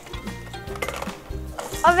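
Background music of low repeating notes, with a few light plastic clicks about a second in as a bead is slid along a toy's wire maze.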